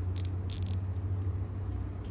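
Nylon zip tie pulled tight through its locking head, giving two short ratcheting zips about a third of a second apart near the start, over a low steady hum.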